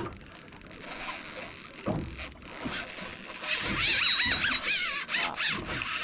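Fishing reel's drag squealing as a big, powerful fish makes a run and strips line off the spool. The whine wavers in pitch and builds through the second half.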